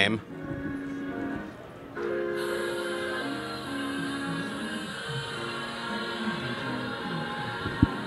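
Music playing from a Sony single-point 360 Reality Audio speaker, with a new song starting about two seconds in.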